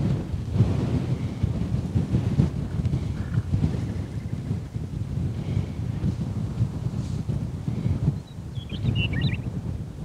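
Wind buffeting the microphone in open grassland: a gusting low rumble that rises and falls. Near the end comes a brief, wavering high-pitched call.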